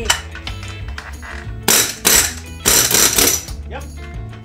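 Two loud bursts, each about half a second long, of a tool hammering a part loose in a truck's engine bay, over background music.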